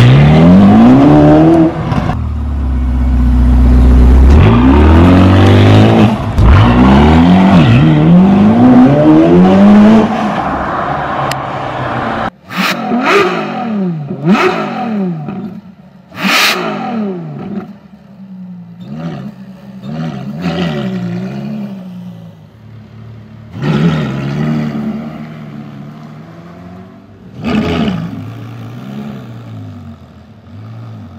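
Ferrari California's V8 engine accelerating hard, its pitch climbing in repeated rising sweeps. About twelve seconds in the sound drops off abruptly and gives way to quieter revving broken by several sharp cracks.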